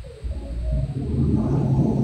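Low rumbling background noise, joined about halfway through by a man's drawn-out, hum-like hesitation sound held on one steady low pitch between spoken phrases.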